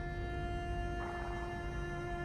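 Orchestral film score with long, steady held notes in the strings.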